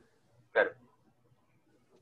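Only speech: a single short spoken word, "claro", about half a second in, with faint room tone around it.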